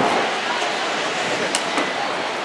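Crowd and traffic bustle around a car at a busy kerbside, with faint muffled voices and two sharp clicks near the end.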